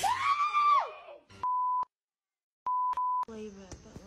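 A high-pitched cry, then a steady censor bleep tone covering a word, about a second of dead silence, and two more bleeps back to back.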